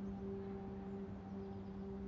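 Background music score: a soft sustained note held steadily, like a drone or pad.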